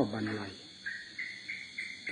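An insect chirping in short, evenly spaced high pulses, about three a second, starting about a second in.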